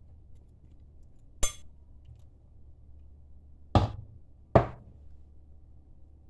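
Kitchenware knocking: a glass dessert cup and a metal pot handled on a counter, giving three sharp knocks with a short ring each, one about a second and a half in and two louder ones close together near the four-second mark.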